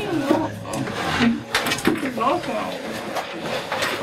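Several voices talking over one another, with a few sharp knocks and scrapes of tablet-arm classroom chairs and desks as people get up and shift them, the clearest knocks about a second and a half in and near the end.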